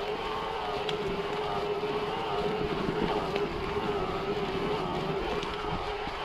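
Mountain bike rolling along a dirt singletrack, with tyre and bike noise and wind buffeting the microphone. A steady, slightly wavering whine sits underneath, with a few faint ticks.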